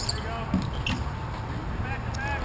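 A few sharp clacks of hockey sticks and ball play on an outdoor plastic-tile rink, with distant players' shouts.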